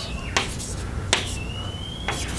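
Chalk writing on a blackboard: a couple of sharp taps as the chalk strikes the board, then a thin, slowly rising squeak as a stroke drags across it in the second half.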